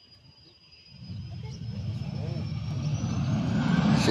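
Business jet's engines growing steadily louder as it rolls down the runway after landing, with a thin high whine that climbs in pitch near the end.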